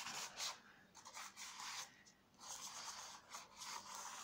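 Chalk rubbed flat across black paper, a faint scratchy rubbing in a few short strokes with brief pauses between them.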